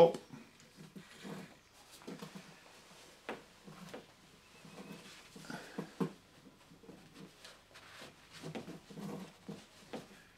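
Gloved hands pushing thin plastic tubing through a plastic switch back box: soft rustling and scraping with a few light clicks and knocks.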